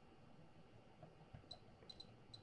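Near silence: room tone, with a couple of faint clicks late on from the controls of a bench waveform generator as the duty-cycle setting is stepped down.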